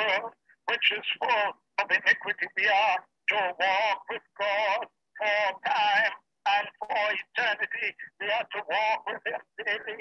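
A person speaking over a video-call connection, in short phrases with brief pauses.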